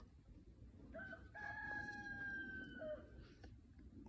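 A rooster crowing once, faint: a short opening note about a second in, then a long held note that drops at the end.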